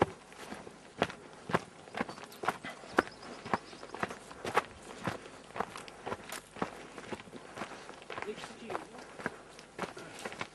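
Footsteps of a person walking at a steady pace, about two steps a second, each step a short crisp scuff.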